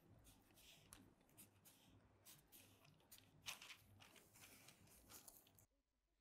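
Near silence, with faint scattered scratches and rustles of a felt-tip marker and hands working on tissue pattern paper. One is a little louder about three and a half seconds in.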